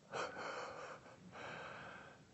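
A man drawing an audible breath through the mouth, heard as two short hissy breaths, the first about a second long and the second a little shorter.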